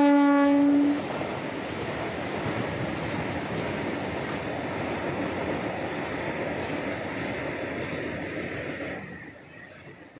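Vande Bharat Express electric trainset sounding its horn: one loud, steady-pitched blast that cuts off about a second in. Then the steady running noise of the train passing, which drops away near the end.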